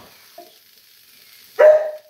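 A dog gives one loud, sharp bark about one and a half seconds in, barking at a bird. Beneath it is the faint sound of a spatula stirring vegetable curry in a frying pan.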